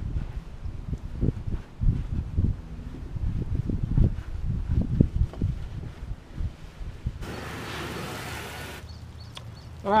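Irregular low thumps and rumbling against the plastic kayak while it is being washed, then a garden hose spraying water onto the kayak's plastic hull as a steady hiss for under two seconds, starting about seven seconds in.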